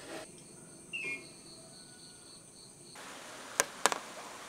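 Insects trilling steadily in a high, pulsing drone, with a short falling bird-like chirp about a second in. The trill cuts off suddenly about three seconds in, followed by two sharp clicks near the end.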